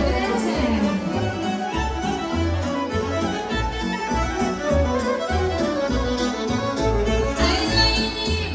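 A live wedding band playing a Maramureș folk dance tune: a fiddle melody over a steady, pulsing bass beat.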